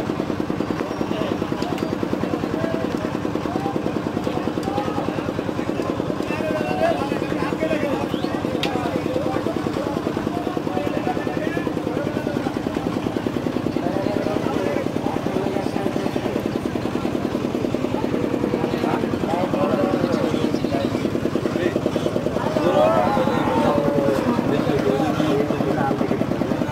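An engine running steadily, with a fast even pulse, under the chatter of many voices.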